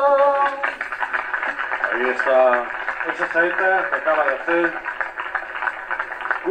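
A man's long sung note with a wavering pitch, the end of a flamenco saeta sung to the palio, stops under a second in. Indistinct voices and crowd noise follow.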